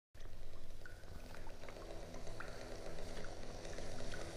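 Quiet intro of a crust punk album track: a rushing, crackling noise with scattered clicks, under low sustained tones that come in about a second in.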